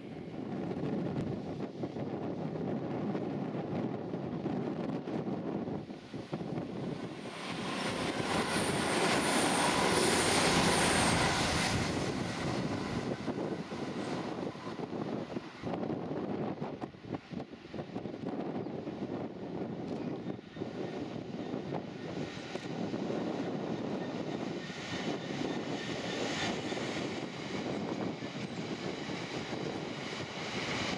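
Class 66 diesel-electric freight locomotive running under power as it hauls a freight train past, loudest about ten seconds in. Then the steady rumble of box wagons rolling by, with scattered clicks from the wheels.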